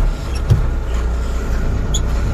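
Loaded Tata truck's diesel engine running at idle, heard from inside the cab as a steady low rumble, with a single knock about half a second in.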